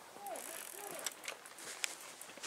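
Faint scattered clicks, a few sharp ticks about a second in and near the end, over the murmur of distant voices.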